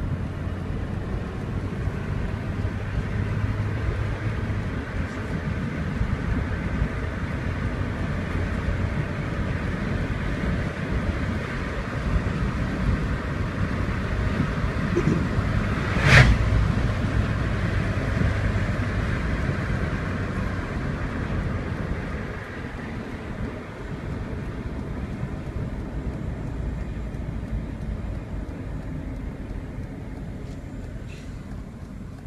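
A car driving on a paved road, heard from inside the cabin: steady engine and tyre noise, with a single sharp knock about halfway through.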